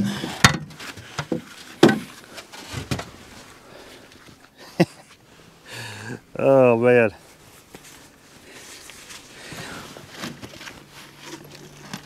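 Scattered knocks and clicks of a man moving about and handling gear in a fishing boat, with one short voiced sound from him just past halfway.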